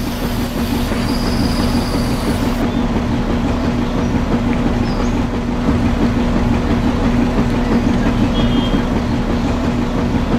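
Small battery-powered electric motor driving a miniature tin-can cement mixer, running steadily with a constant hum and a continuous low rattle from the drum and its drive.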